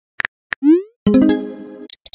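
Typing-app keyboard clicks, a few quick taps, then the message-sent sound effect: a short rising 'bloop' followed by a pitched chime that fades, with two short high clicks at the very end.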